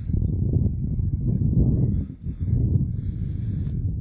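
Wind buffeting the microphone outdoors: a low, fluttering rumble that drops away briefly about two seconds in.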